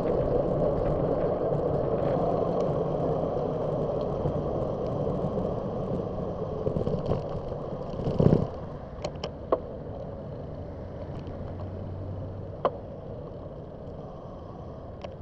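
Wind and road noise from a moving bicycle with passing traffic, steady for the first eight seconds. About eight seconds in there is a single loud jolt as the bike crosses cracked pavement at an intersection. After that the noise drops as the bike slows, with a few sharp rattling clicks and a vehicle's low hum.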